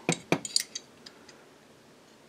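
Small steel pistol parts clicking against each other as the loose guide rod is worked back into the slide of a 1911 during reassembly: a few sharp metallic clicks in the first second.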